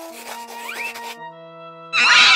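Cartoon pencil-on-paper scratching as a pencil sketches, stopping a little after halfway, over soft background music with held notes. A short rising glide sounds near the middle.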